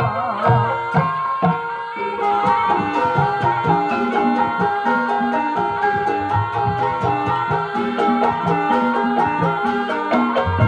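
Gamelan music accompanying a kuda kepang hobby-horse dance: metallophones ring out a repeating melody over a busy, steady hand-drum beat.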